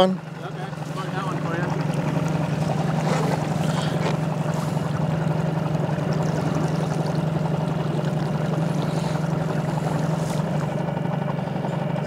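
Small boat's motor running steadily, its hum building over the first second or two and then holding even.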